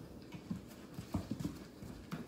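Faint, irregular light knocks and taps on a hardwood floor, several in quick succession about halfway through.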